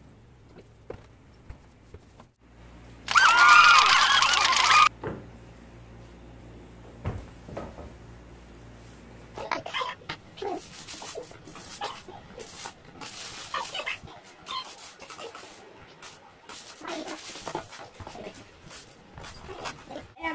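Metal tongs and a metal baking tray clinking and knocking as freshly baked scones are lifted onto a wire cooling rack, with a low hum that stops about halfway through. About three seconds in comes the loudest sound: a high, wavering cry lasting about two seconds.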